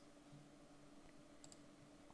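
Near silence: faint room tone with a low steady hum, and one small click about one and a half seconds in.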